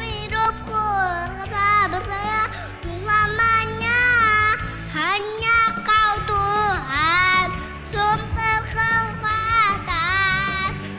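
A young boy singing an Indonesian worship song into a microphone over a backing music track, his voice holding and bending notes through the phrases.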